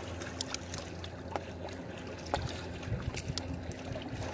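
Small lake waves lapping and splashing against shoreline rocks, with scattered little splashes and a faint low steady hum underneath.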